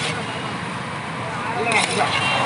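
Steady street traffic noise with indistinct voices in the background. Near the end, a few sharp scrapes and clinks of a steel ladle against a large steel pot as rice is scooped.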